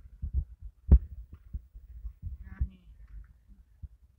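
A basketball bouncing on a hardwood gym floor as a player dribbles at the free-throw line: a few dull, uneven thumps, the loudest and sharpest about a second in.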